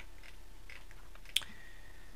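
Low steady room hiss with one short, sharp click just past the middle.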